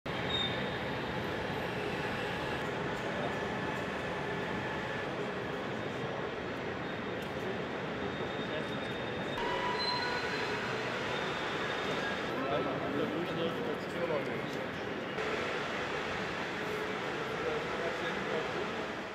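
Railway station ambience: a steady, echoing hum of a large station hall with faint distant voices, changing in character at each cut every few seconds.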